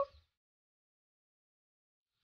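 Near silence: the last of a spoken word cuts off in the first moment, then there is nothing at all.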